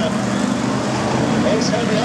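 BriSCA F1 stock cars' V8 engines running hard as several cars pass close by, a steady, loud, continuous engine noise.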